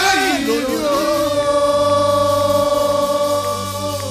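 Gospel worship singing: a voice sings a short, bending phrase and then holds one long note for about three seconds, over a steady low hum.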